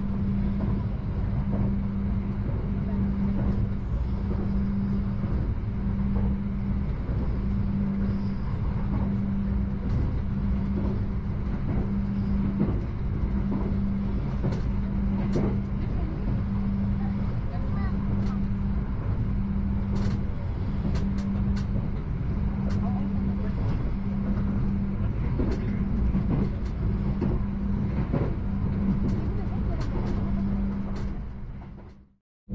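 A passenger train running along the track, heard from inside the carriage: a steady low rumble with a hum that swells and fades about every one and a half to two seconds, and scattered sharp clicks.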